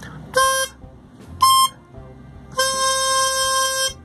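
Diatonic harmonica played as an octave split on holes 3 and 6 together: two short notes, then one held for about a second and a half. The octave is out of tune, sounding awful to the tuner checking it.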